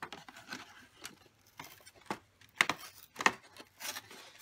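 Fingers picking and tearing at a cardboard advent calendar door: a few short scratchy rips and taps, the clearest in the second half.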